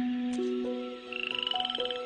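Light melodic music with a cartoon frog-croak sound effect: a fast trill that starts about halfway through and rises slightly in pitch.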